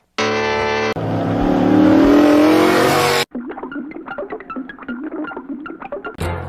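A short steady tone, then a car engine accelerating, its pitch rising under a rush of noise for about two seconds before it cuts off abruptly. A quieter run of short, scattered tones follows.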